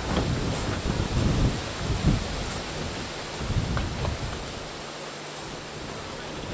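Wind buffeting the microphone: irregular low rumbling gusts over a steady hiss, strongest in the first two seconds and again a little past halfway, easing toward the end.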